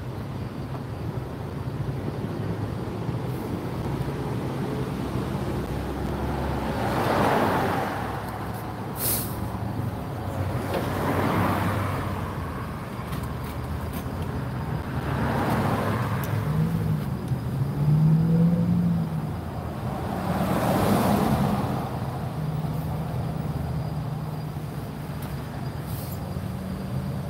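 Road traffic passing: vehicles go by one after another about every four seconds, each swelling and fading, over a steady low engine hum. There is a brief high hiss about nine seconds in, and the loudest pass, a little past the middle, carries a low engine note.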